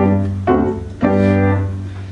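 Three held musical notes played in a short phrase, the first two short and the third held about a second.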